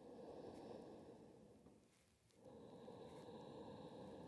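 Faint, slow ujjayi breathing held in a counted pose: two long soft breaths with a short pause between them about halfway through.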